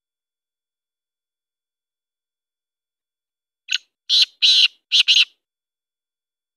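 Black francolin calling: one short note, then a quick run of four harsh, high notes, starting nearly four seconds in and lasting about a second and a half.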